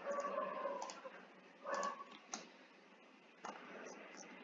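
Computer mouse clicks, a few scattered sharp clicks, with two short steady tones of unknown source: one about a second long at the start, and a brief one just before two seconds in.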